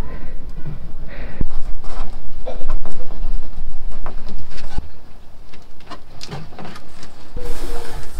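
Plastic cable ties being threaded through holes in plywood and pulled tight with pliers: scattered clicks, scrapes and handling noise, with a couple of sharp knocks, one about a second and a half in and another about five seconds in.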